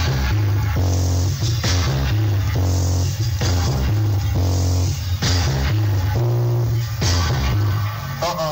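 Reggae music played on a sound system, with a deep, heavy bassline repeating under a steady rhythm.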